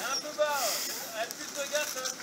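People talking, words unclear, with the engine of an off-road 4x4 climbing a steep dirt slope faintly underneath.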